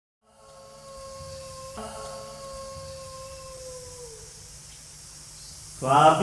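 A single long held wailing tone, like a howl, heard in a theatre's stage sound over a low rumble; it dips in pitch and fades out about four seconds in. Just before the end, loud voices break into chanting.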